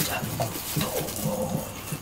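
A man making a series of short, low grunts and hums, not words.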